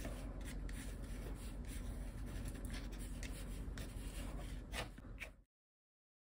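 Black Sakura Gelly Roll gel pen scratching over textured, paint-covered paper as flower outlines are drawn, with faint small scrapes and rubs from the hand. The sound cuts off suddenly near the end.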